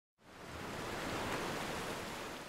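A soft rushing wash of noise, like a single wave of surf, swelling in and fading away as the opening sting of a news video.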